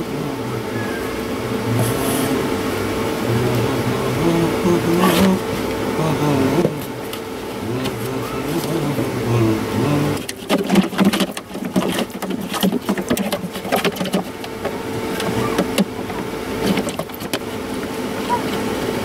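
A small loudspeaker driver sitting in the neck of an empty plastic water can plays low notes that step up and down in pitch over a steady hum, with the can adding boom to the bass. From about ten seconds in, sharp knocks and scrapes come from hands shifting the speaker against the plastic can.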